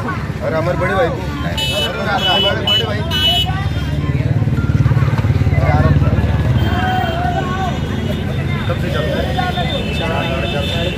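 Men's voices chattering with a road vehicle's engine passing close by, swelling to the loudest point around the middle and fading again. Earlier comes a quick run of short high-pitched beeps.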